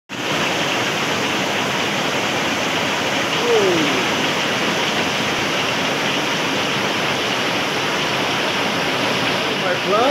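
Heavy rain pouring steadily off a roof edge onto the leaves and paving below, an even hiss of downpour. A short falling tone cuts through it about three and a half seconds in.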